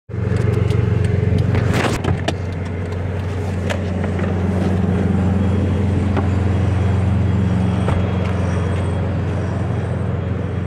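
A motor vehicle engine runs steadily with an unchanging low hum. Clicks and knocks from the phone being handled come in the first two seconds.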